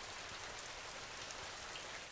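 Heavy rain falling, a steady even hiss.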